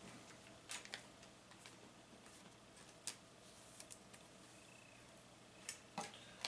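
Near silence with a few faint, scattered clicks and light rustles as a baseball card is slipped into a plastic sleeve and set on a display stand.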